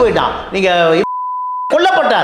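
A single steady beep, just over half a second long, dropped into a man's speech about a second in, blanking out a word: a censor bleep.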